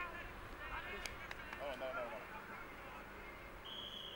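Faint voices of players talking among themselves, with two sharp clicks about a second in and a short, steady high tone near the end.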